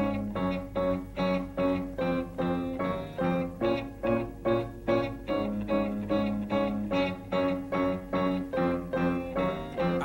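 Instrumental passage of a 1970s psychedelic blues-rock song. A picked guitar plays a steady line of evenly spaced notes, about three a second, over a held low note.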